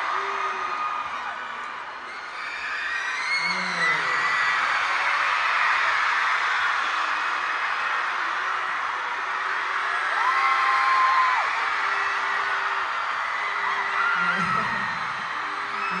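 Large arena crowd of K-pop fans cheering and screaming, with many overlapping high-pitched shouts and whoops. One louder held scream comes about ten seconds in.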